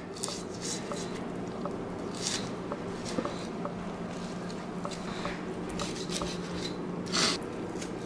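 Knife cutting and scraping along a raw turkey's bones, with soft wet squishing as the meat is pulled away and a few brief scrapes, the loudest near the end. A steady low hum runs underneath.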